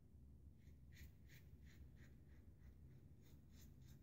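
Faint, short scraping strokes of a Parker Variant double-edge safety razor with a Feather blade cutting lathered neck stubble, about three strokes a second.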